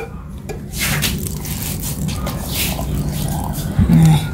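Coconut water poured from a drinking glass into a glass blender jar of chopped bitter gourd and papaya, a steady pour that starts about a second in.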